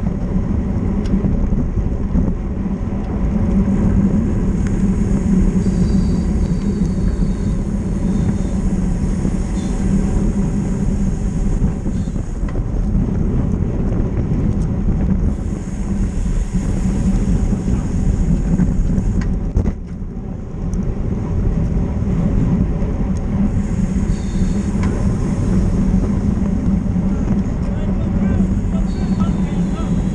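Steady wind rush and tyre rumble picked up by a camera on a road bike moving at racing speed in a pack, dense and low, easing briefly about two-thirds of the way through.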